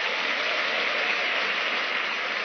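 An audience applauding steadily, a dense even clatter of many hands clapping.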